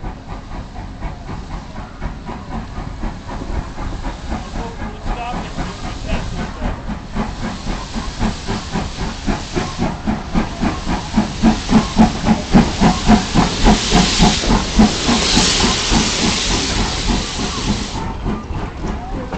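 Steam locomotive arriving and passing close by with a rapid, steady rhythmic clatter that grows louder through the second half, broken by two loud bursts of steam hissing.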